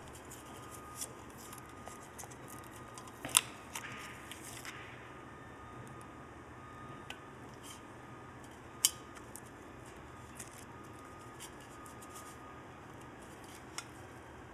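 Quiet room tone broken by scattered light ticks in the first few seconds and two sharp clicks, about three and a half and nine seconds in.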